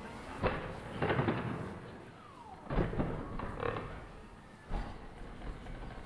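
Boston Dynamics Atlas humanoid robot jumping and landing, giving several sharp thuds and knocks spread over a few seconds as its feet hit the boxes and platform.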